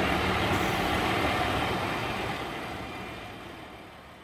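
The triple-turbo Hino inline-six diesel of a rice harvester running steadily, fading out gradually.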